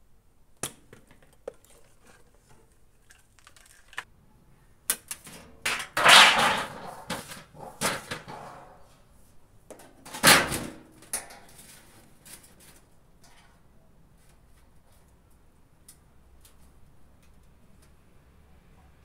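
A stainless steel range hood being taken apart and its sheet-metal body handled: scattered clicks and metal knocks. A louder stretch of rattling and scraping starts about six seconds in and lasts a couple of seconds, and a shorter loud clatter follows about ten seconds in.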